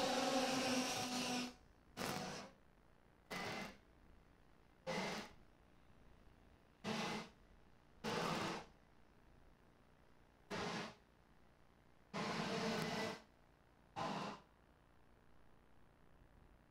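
Two-stroke X30 racing kart engines buzzing faintly, heard in short bursts that cut in and out abruptly, with near silence between them.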